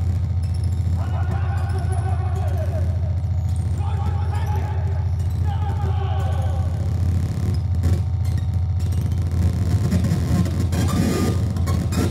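Live hardcore show PA: a loud, steady low amplifier hum with indistinct voices over it, and harsher noise building in the last few seconds.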